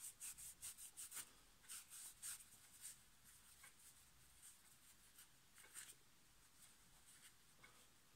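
Faint, quick rubbing strokes of an abrasive polish pad against a small steel part, several strokes a second for the first three seconds, then fainter and fewer.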